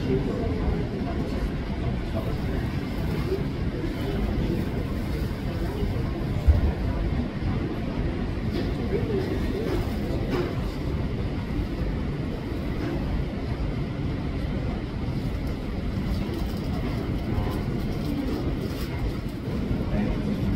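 Steady low rumble with indistinct voices mixed in, and a single knock about six and a half seconds in.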